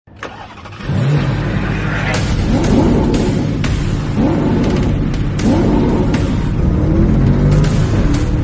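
A car engine revving in repeated rising surges over music with a beat. The sound starts about a second in.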